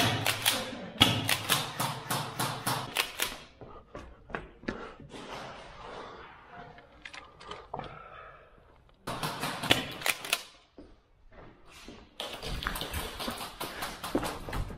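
Quick footsteps on concrete stairs and hard ground, a rapid run of sharp taps at about three to four a second, fainter in the middle and picking up again near the end.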